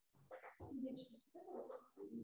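Faint, low-voiced talk between people sitting close together, in short broken stretches.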